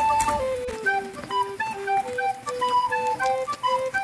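Background music: a simple, slow melody of short held notes in a soft, flute-like tone.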